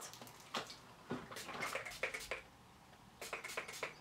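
Pump-spray bottle of body mist being sprayed in several short hissing bursts, a few of them close together near the end.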